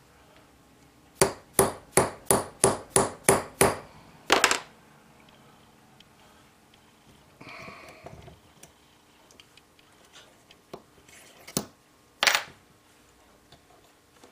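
Small hammer tapping the steel stake of a clockmaker's staking tool, driving a bent arbor out of a clock wheel: eight quick light taps, about three a second, each with a short bright ring, then one last double tap. Near the end come two sharp clicks as the stake is handled.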